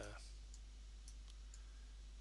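Near silence: room tone with a steady low hum and a couple of faint clicks.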